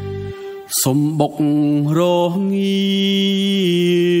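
A man singing a slow Khmer song over music. The low backing drops out just after the start, a sharp hit comes before the voice enters, and the sung phrases end in a long held note that then wavers with vibrato.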